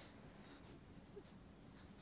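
Near silence: faint room tone with a few brief, soft hisses.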